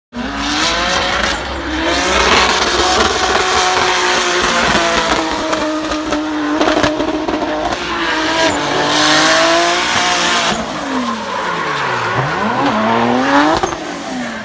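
Toyota GT86 with a swapped 2JZ inline-six drifting: the engine held at high revs, rising and falling with the throttle, over tyre squeal. Near the end the revs drop sharply and climb back.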